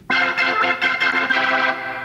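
Hammond B3-style organ holding a chord, coming in sharply just after the start and easing off slightly toward the end.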